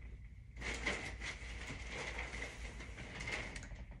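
Rustling and handling noise of haul items being rummaged through and picked up, starting about half a second in as a continuous crackly rustle.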